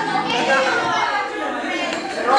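Several people talking over one another: overlapping chatter in a large, echoing hall.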